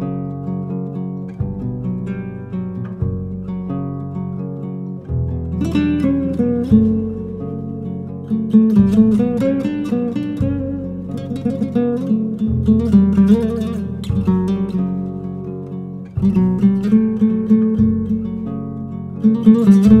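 Solo nylon-string classical guitar. It opens with slow bass notes and sustained chords, then from about five seconds in plays louder, faster melodic runs over the changing bass notes.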